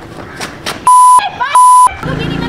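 Two loud beeps of one steady pitch, each about a third of a second long and a third of a second apart, with a brief bit of voice between them: a censor bleep tone laid over speech.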